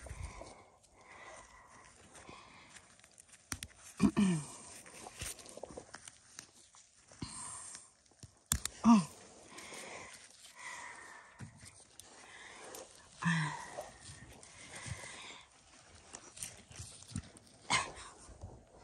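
Gloved hands digging and rummaging through loose garden soil to lift sweet potatoes. A few short vocal sounds, falling in pitch, stand out, and there is a sharp knock about halfway through.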